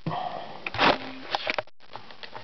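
A person's short sniff just under a second in, among a few light clicks from fingers handling small plastic parts.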